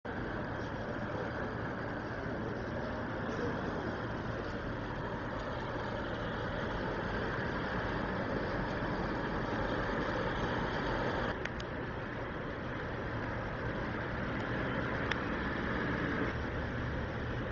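Steady street traffic noise: cars driving along a wet road, with a couple of brief clicks about eleven and fifteen seconds in.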